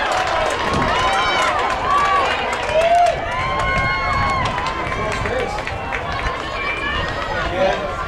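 Crowd of spectators shouting and cheering, many voices overlapping, with some long held calls.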